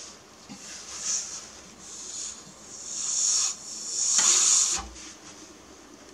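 A person blowing hard into a lawn tractor's fuel tank by mouth: a series of breathy rushes of air that grow longer and louder, the loudest about four seconds in, then stopping. The blowing pressurises the tank to test whether the fuel line to the pump is clogged.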